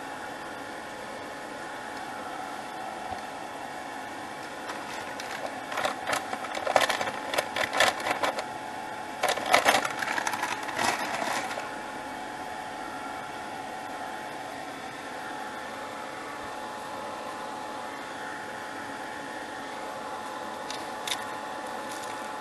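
A handheld hot-air dryer blowing steadily with a constant motor hum while it dries wet paint and powder on small paper cards. About five seconds in, several seconds of louder, irregular noise rise over it.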